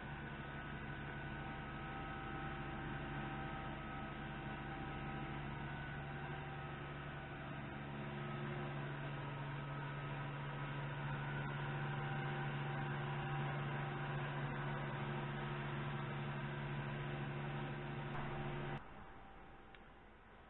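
A steady hum made of several held tones, growing slightly louder about halfway through and cutting off abruptly near the end.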